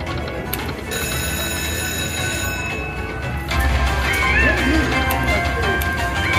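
Video slot machine playing its spin music and reel sounds as the reels turn on a Silk Road game, over general casino floor noise. It gets louder about three and a half seconds in, where a short rising-and-falling melodic figure repeats.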